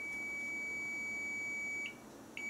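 Digital multimeter in diode-test mode giving a steady, high-pitched continuity beep for nearly two seconds, cutting off just before the end, as its probes sit across a component on a TV switch-mode power supply board. The meter beeps like this on a near-zero reading, the sign of a short circuit, which the repairer finds not normal.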